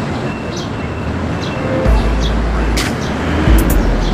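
Steady rushing air noise with low rumbling buffets of wind on the microphone, and a couple of sharp light clicks in the second half.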